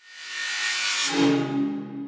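Title-card sound effect: a swelling whoosh that settles about a second in into a low sustained tone, which then fades away.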